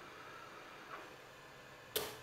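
A spring-loaded solder sucker (desoldering pump) snapping once, sharp and brief, near the end, with a faint click about a second in. The pump is drawing molten solder from the joints of a broken USB port on a circuit board.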